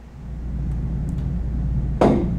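A steady low rumble of room background noise, with no distinct events, fading in about a quarter second in.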